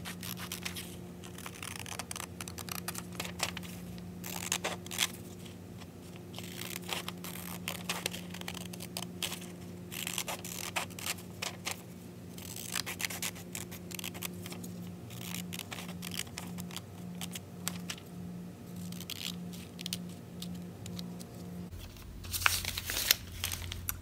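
Scissors cutting out a paper pattern piece: a run of irregular snips with paper rustling and crinkling as the sheet is turned and handled.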